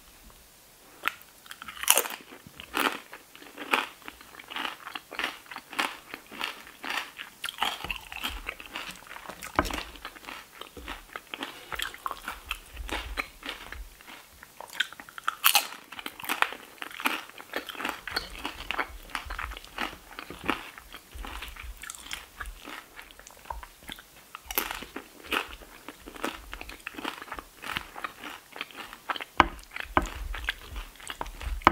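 Close-miked chewing of crunchy tortilla-chip nachos under meat, cheese, sour cream and vegetables: a steady run of bites and crackling crunches, with a few louder snaps standing out.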